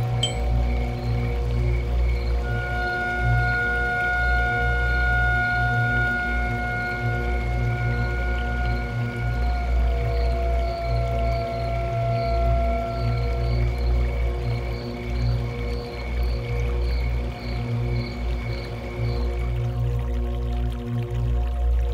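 Background music from the drama's score: long held synthesizer notes over a steady low bass, with a soft high note repeating about twice a second.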